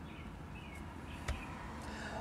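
Quiet background hum with a few faint bird chirps in the first second, and one sharp click a little past the middle.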